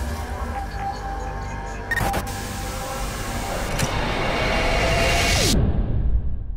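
Music and sound effects of an animated channel-logo sting: a sudden hit about two seconds in, then a swelling hiss that cuts off sharply near the end, with a falling tone just before the cut.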